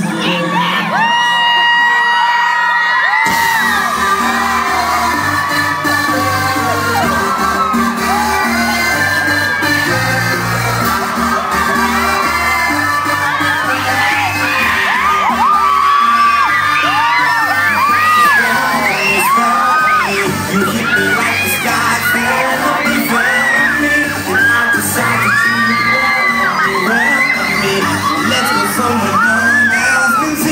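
Live pop band music with a heavy beat that comes in about three seconds in. Over it, a crowd of fans screams constantly.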